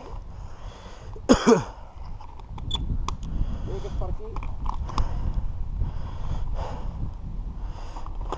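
Mountain bikes being walked along a dirt trail: a steady low rumble with scattered clicks and crunches from tyres, parts and footsteps. A short vocal sound comes about a second in.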